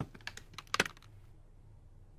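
Plastic Lego bricks clicking as they are pressed together: a few sharp clicks in the first second, the loudest a quick double click a little under a second in.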